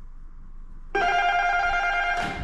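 Apartment building entry intercom call box sounding a steady electronic tone, starting suddenly about a second in after its button is pressed.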